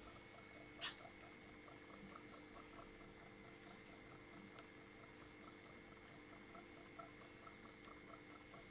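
Wrap labelling machine running faintly, a steady hum with a light, regular ticking. A brief rustle about a second in.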